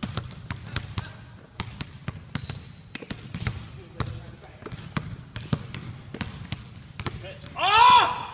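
Basketball bouncing and being caught on a hardwood gym floor during a dribble-and-pass drill: a run of irregular thuds, roughly two or three a second, with a couple of brief sneaker squeaks. A man calls out near the end.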